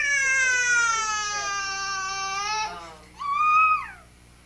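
A high-pitched voice holding one long unbroken cry that slowly falls in pitch for nearly three seconds. A shorter, higher cry follows, rising and falling, before the end.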